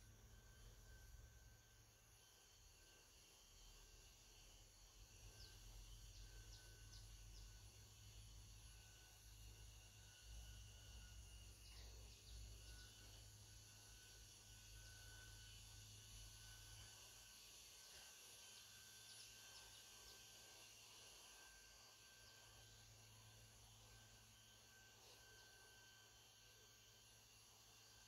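Near silence: faint outdoor ambience with faint insect and bird sounds, over a low rumble that fades out about two-thirds of the way through.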